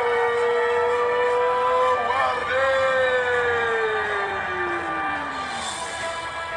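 A ring announcer's voice calling out the winning fighter's name in long drawn-out notes over background music. The first note is held steady for about two seconds; after a short break, a second long note slides down in pitch until near the end.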